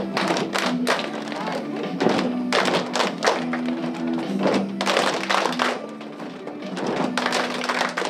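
Children's choir number with instrumental accompaniment: a repeating low melody line runs under loud, sharp percussive hits that come in a steady rhythm, several a second.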